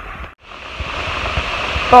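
Steady rain falling onto an umbrella held overhead. The sound drops out briefly about a third of a second in, then the rain's hiss rises gently.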